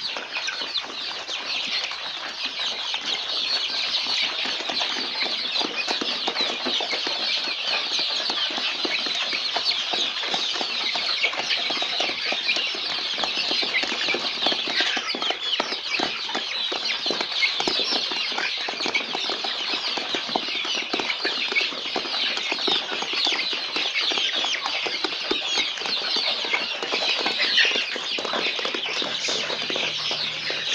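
A crowded flock of young chickens cheeping and peeping continuously, many overlapping high calls at a steady level.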